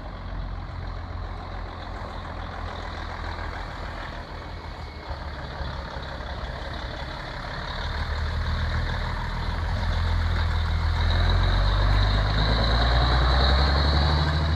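Mercedes-Benz Actros 2640 truck tractor's V6 diesel engine running as the unladen rig pulls out and drives past, growing louder from about eight seconds in and loudest near the end.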